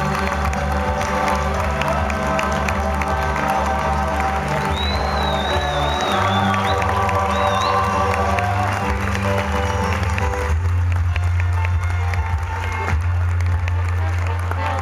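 Music with a steady bass line playing over a theatre audience's continuous applause and cheering during a curtain call, with a high wavering whistle from the crowd about five seconds in.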